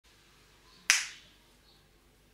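A single sharp finger snap about a second in, dying away quickly with a brief ring.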